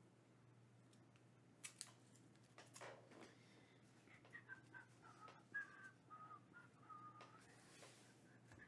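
A person whistling a tune softly, the pitch stepping from note to note, starting about halfway through. Before it come a few light clicks and a short rustle, like cards being handled.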